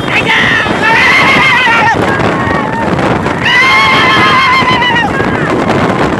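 Two long, high, wavering cries, the first about a second in and the second near the middle, over the steady noise of motorcycles and a horse cart racing alongside, with wind on the microphone.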